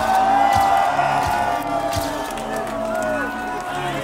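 A crowd of people shouting and cheering, many voices at once.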